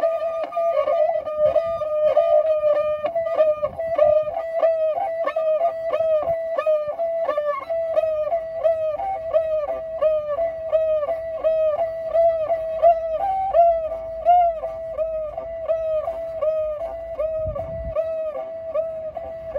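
Kyl-kobyz, the Kazakh two-string bowed fiddle, played solo with a bow and a rich, buzzy tone full of overtones. A wavering held note gives way after about three seconds to a repeated figure of short notes, each bending up and back down, about two a second.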